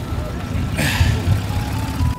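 Wind buffeting the microphone with an uneven low rumble, a short hissy gust about a second in, and faint voices of people in the background.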